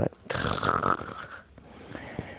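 A person's breath, a noisy unvoiced rush of air lasting about a second and then fading out.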